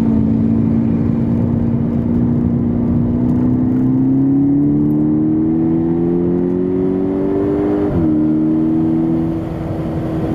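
Volkswagen Golf GTI Edition 35's turbocharged 2.0-litre four-cylinder engine, heard from inside the cabin, pulling hard through a gear with its pitch climbing steadily. The pitch drops sharply about eight seconds in as the driver upshifts, then the engine pulls on again in the next gear.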